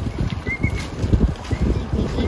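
A baby stroller's small wheels rattling and knocking as it is pushed along a paved path, with footsteps.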